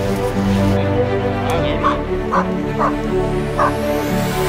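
A dog giving four short yelps or barks in the second half, about half a second to a second apart, over background music.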